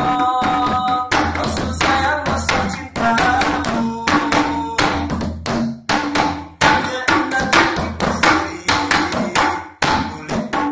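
Hand drum struck with the bare hands in a quick rhythm of low and higher strokes, accompanying a man singing a sholawat melody, a held note opening the passage.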